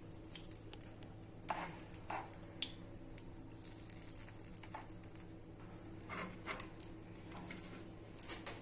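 Steel spoon tapping and scraping against a non-stick appe pan as batter is spooned into its cups: a few soft, irregular clicks and wet dabs over a faint steady hum.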